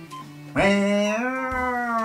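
A man's voice drawing out one long, sung-like 'ooooh' of almost two seconds, starting about half a second in, rising slightly and sliding down at the end.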